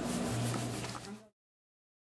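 Quiet room tone with a steady low hum, cutting off abruptly to dead silence a little over a second in.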